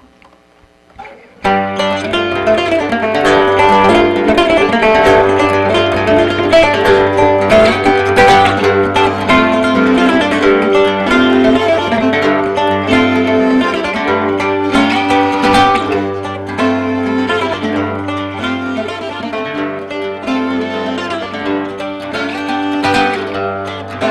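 A fiddle and a mandocello strike up a tune together about a second and a half in. The mandocello's plucked notes sit under the bowed fiddle melody.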